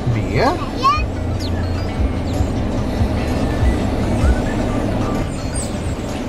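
A car's engine running with a steady low hum under background music, with a few brief rising pitched glides in the first second.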